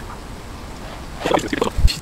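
Handling noise: a few light knocks in the second half, ending in a low thump just before the end.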